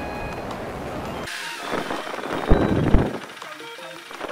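Ride noise of a Honda Rebel 250 on the move: a steady engine and wind rumble that cuts off abruptly a little over a second in. It is followed by a louder rushing stretch with two heavy thumps as the bike rolls over a rough, potholed dirt road.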